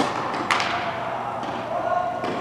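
Tennis ball being struck and bouncing in a rally on an indoor court: a sharp pop at the start, a stronger one about half a second in, and a fainter one about a second and a half in, each echoing in the hall.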